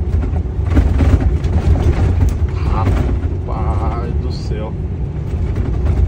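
Inside a moving truck cab: steady low engine and road rumble with rattling and jolting as the truck runs over a rough, patched road, heaviest about a second in. A short wavering tone sounds near the middle.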